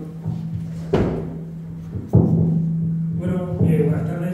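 Table microphone being handled and moved closer: two heavy thumps on the mic, about a second and two seconds in, over a steady low hum, with a voice starting near the end.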